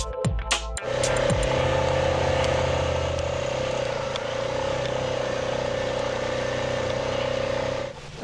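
Electronic music ends about a second in. Then an ATV engine runs at a steady speed under an even rushing noise of wind and dirt road.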